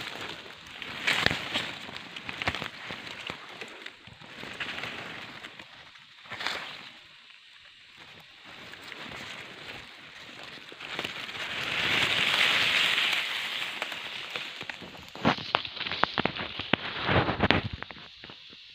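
Dry leaves, twigs and brush rustling and crackling as a hand pushes through undergrowth to pick up a shot bird. There is a louder swell of rustling about twelve seconds in and a close run of sharp snaps and crackles near the end.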